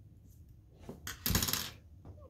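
A faint click, then a short metallic clatter, like a coin dropped on a table, about a second in: the bent brass-rod mobile arm being set down on the tabletop.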